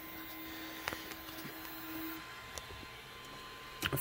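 Orbiter extruder's stepper motor pulling the filament back out during an unload, a faint steady whine that stops a little over two seconds in. A single click about a second in.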